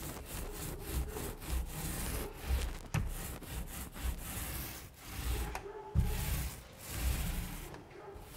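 Mohair paint roller loaded with chalk paint rolling over a flat wooden door panel, a rubbing swish in repeated back-and-forth strokes, about one a second.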